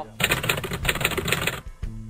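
Rapid typewriter-style clicking sound effect, a fast dense run of keystrokes lasting about a second and a half, then music comes in with a steady low note near the end.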